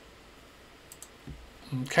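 A couple of faint, sharp clicks about a second in, from a computer mouse clicking Save in a dialog, over faint room hiss; a man says "okay" near the end.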